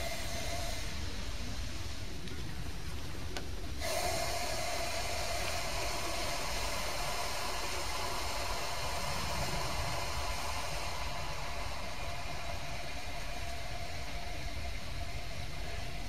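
Piranha solution (concentrated sulfuric acid with hydrogen peroxide) fizzing steadily as it oxidizes a paper towel and gives off oxygen, with a faint steady tone underneath. The sound steps up a little about four seconds in.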